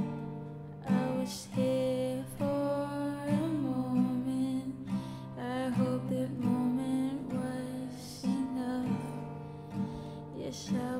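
Acoustic guitar playing a slow instrumental passage of a song, chords plucked about once a second and left to ring.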